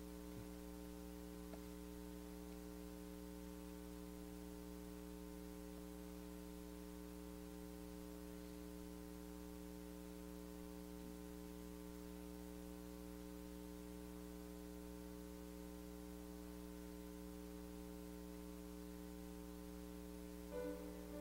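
A steady, faint electrical mains hum: a low buzz of several fixed tones that does not change, with no other sound.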